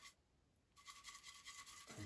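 Faint scratchy brushing of a paintbrush laying acrylic paint onto canvas, starting about a second in.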